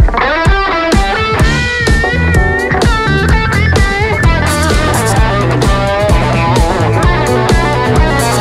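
Electric guitar on a Fender playing a lead line with bent and wavering notes, over electric bass and a drum kit playing a groove.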